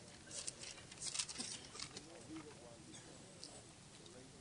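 Faint, scattered rustling of a congregation turning the pages of their Bibles.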